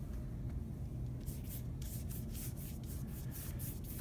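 A big paintbrush loaded with paint stroked back and forth across paper, a repeated brushing swish about three strokes a second that starts about a second in.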